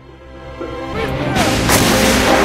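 A howitzer firing over background music: the blast builds up from about half a second in and stays loud and rushing to the end.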